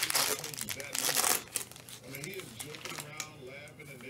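A trading card pack's shiny wrapper being torn open and crinkled by gloved hands, a dense crackle that is loudest in the first second and a half and then dies down.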